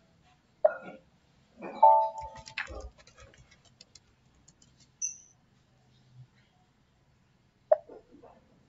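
A person's short, hiccup-like throat sounds, one about half a second in and one near the end, with a brief hum between two and three seconds in, over faint computer keyboard and mouse clicks.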